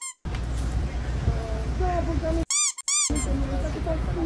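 High-pitched squeaks, each a quick rise and fall in pitch: one right at the start and two in quick succession about two and a half seconds in. All other sound drops out around them, as with a squeak effect cut into the clip. Between them are faint voices over a low steady rumble.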